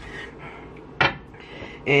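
Quiet handling of kitchen containers, with one short clink about halfway through.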